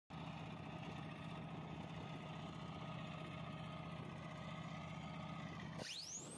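Strela-10 air-defence vehicle's diesel engine idling steadily. Near the end a whine sweeps quickly upward in pitch as its missile launch begins.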